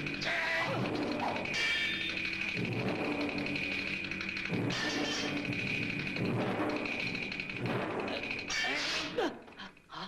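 Dramatic film score music with a high phrase that recurs every second or two. Near the end a man cries out and the music drops away.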